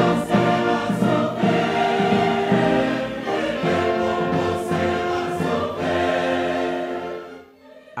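Large mixed choir singing held chords with a symphony orchestra of strings and brass, fading out near the end.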